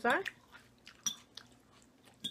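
Close-miked chewing of Caesar salad (romaine lettuce and croutons): scattered wet crunches and mouth clicks, with a light metallic clink of a fork about a second in.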